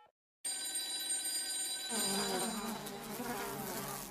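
A steady buzzing, hissing noise with a few thin, steady high tones, starting about half a second in; a lower buzz joins about halfway through.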